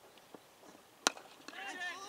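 Cricket bat striking the ball once, a sharp crack about a second in, followed by players' shouting voices as the batters run.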